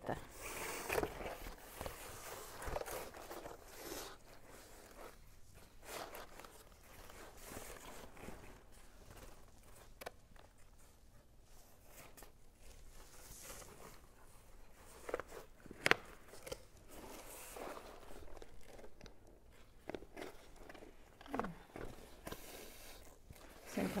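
Corrugated cardboard and paper rustling and crinkling as they are handled, with cord being pulled through holes in the cardboard. A few sharp clicks or taps stand out, the loudest about sixteen seconds in.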